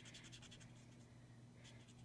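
Faint scratching of a Copic alcohol marker's nib stroked quickly back and forth on cardstock, a run of short strokes at the start and again near the end.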